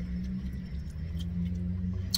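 Steady low running hum of a car, heard from inside its cabin, with a few faint small ticks.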